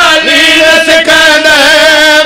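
A man's amplified voice chanting in a melodic recitation: one long, wavering sung note that slides up and down in pitch, through a microphone.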